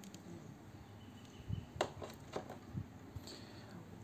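Quiet background with a few faint, sharp clicks near the middle.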